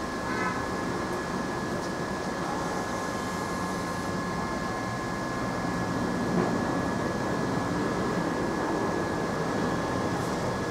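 Steady fan noise with two faint, constant high whining tones running under it.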